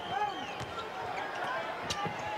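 Basketball being dribbled on a hardwood court: a few separate bounces, the sharpest near the end, over faint background voices.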